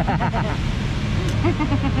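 Steady hum of road traffic, with brief snatches of voices over it.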